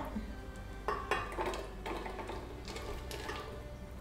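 Soaked cashews tipped from a glass bowl into a glass blender jar, with a few light clatters, over soft background music.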